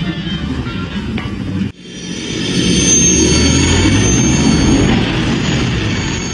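Background music for the first second and a half, stopping suddenly. Then a sci-fi spaceship engine sound effect swells up: a loud deep rumble with a steady high whine.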